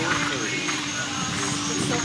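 People talking, with music playing in the background.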